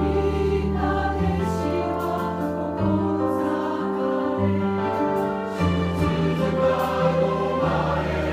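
A church choir singing a hymn, holding long notes that move to new chords every second or so.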